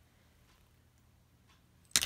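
Quiet room tone, then a single sharp click of a small hard object being handled near the end.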